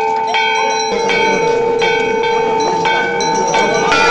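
Hindu temple bells struck over and over, about two to three rings a second, each ring overlapping the last, over a steady held tone underneath.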